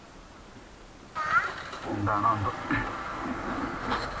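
Voices start suddenly about a second in, high-pitched wavering calls among them, like children talking and calling out.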